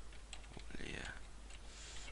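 Typing on a computer keyboard: a quick series of separate key clicks as a word is entered.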